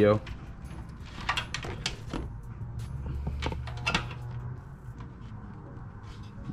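Scattered light clicks and rustles of a nylon vacuum line and its push-in fittings being handled under the hood, over a low steady hum.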